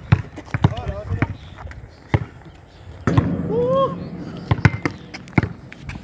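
Basketball being dribbled on an asphalt court: sharp thuds of the ball hitting the ground in an uneven rhythm.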